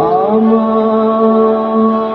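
Live band music holding long sustained notes, with a short upward glide at the very start.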